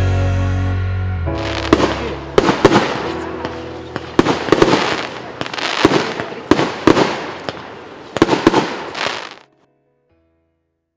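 Fireworks going off in a rapid string of sharp bangs and crackles, starting about two seconds in, over music that fades beneath them. The sound cuts off suddenly near the end.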